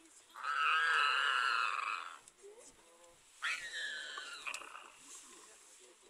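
Lions snarling over a kill: a harsh, wavering snarl lasting nearly two seconds, then a second, shorter one that breaks out suddenly about three and a half seconds in.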